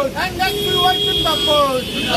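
A group of young protesters chanting slogans in Hindi. A steady high tone is held for about a second in the middle.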